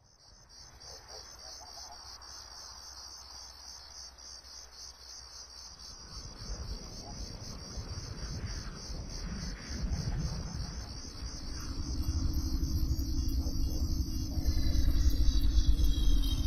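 Cartoon logo-intro sound effects in a pitch-shifted 'G Major' edit. Fast, pulsing cricket chirps run throughout. About six seconds in they are joined by a low rumble that swells steadily louder, with a steady low hum entering near twelve seconds and falling whistles near the end.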